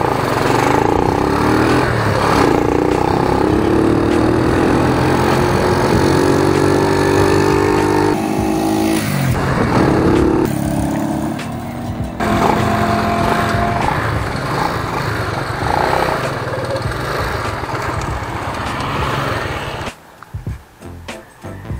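Small motorcycle engine running while riding, with wind rushing over the microphone; the engine note drops off sharply twice, about eight and twelve seconds in.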